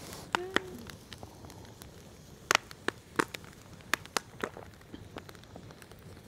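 Wood campfire crackling, with sharp irregular pops, several of them bunched together past the middle.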